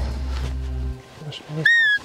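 One short, loud, high whistle near the end, rising sharply and then sliding slightly down in pitch.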